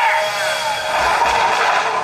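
Chainsaw sound effect from an anime fight scene, running steadily with a sweeping whine that rises and falls near the start.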